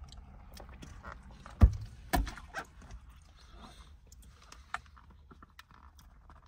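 Close-up eating sounds: chewing with small wet clicks and smacks. Two dull, heavy thumps come about one and a half and two seconds in.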